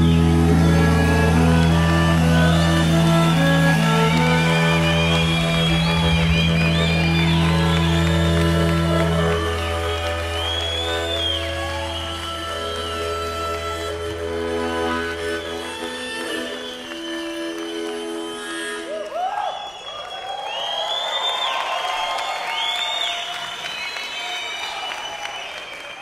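A live band's closing chord, harmonica among the held notes, sustained and then dying away, its bass dropping out about halfway through. After a short lull, an audience cheers and whistles.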